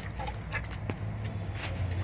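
White broiler chickens clucking softly, with scattered short clicks and rustles, over a steady low hum.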